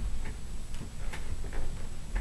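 A few short, sharp clicks roughly a second apart, over low room noise and a faint steady high-pitched whine.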